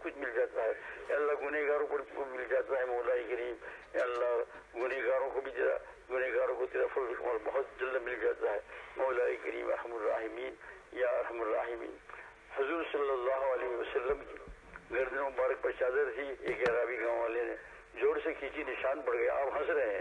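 A man's voice speaking continuously, leading a supplication in Urdu.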